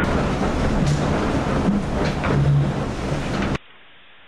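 Steady rushing wind and sea noise around a racing yacht under sail, with wind buffeting the microphone high on the mast. It cuts off abruptly about three and a half seconds in, leaving only a faint hiss.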